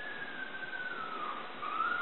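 A puppy whining: one long, thin, high whine that holds and then slowly falls in pitch, breaks off briefly near the end and starts again on a rising note.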